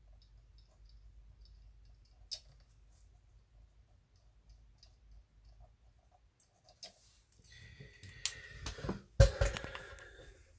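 Mat board and paper being handled and shifted on a tabletop: a few faint small clicks at first, then rustling and scraping from about seven seconds in, with a sharp knock shortly after nine seconds.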